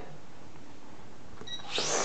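A brief electronic beep about one and a half seconds in, then a high whine that starts just before the end: the SNAPTAIN S5C toy quadcopter's small electric motors and propellers spinning up.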